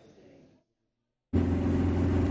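After a brief dead silence, the engine and road noise of a moving car, heard from inside its cabin, starts abruptly about a second and a half in and runs on as a loud, steady low drone.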